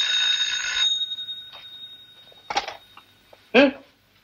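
Telephone bell ringing: one ring of about a second right at the start, its tone then dying away over the next couple of seconds.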